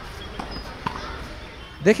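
A single knock of a tennis ball about a second in, over faint background noise from the court.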